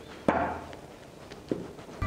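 Two knocks of kitchen utensils against a mixing bowl while flour is tipped in: a sharp one with a short ring about a quarter second in, and a lighter one about a second and a half in.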